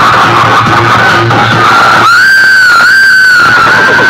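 Very loud dance music blasting from a rack of dozens of horn loudspeakers. About two seconds in the bass beat drops out for a second and a half, leaving a high wavering tone, before the beat comes back.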